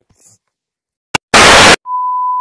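A sharp click, then a very loud half-second burst of TV static, then the steady high beep of a colour-bar test tone starting near the end.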